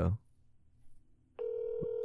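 A telephone ringback tone, heard over a phone's speaker, starting about one and a half seconds in as a steady tone: the called phone is ringing and the call has not yet been answered.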